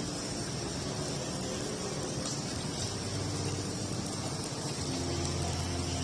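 Rice paper grilling on a wire rack over charcoal, giving a faint steady crackle and hiss. Under it runs a low rumble like passing traffic, which grows louder near the end.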